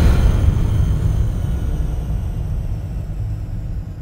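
Deep rumble of a logo sting's impact dying away, slowly fading, with faint high ringing tones fading out above it.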